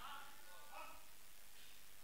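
Faint, distant voice over low room hiss.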